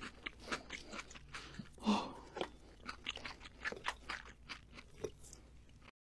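Close-miked chewing of a mouthful of crisp leafy microgreens, a quick run of small wet crunches and clicks, with one louder crunch about two seconds in.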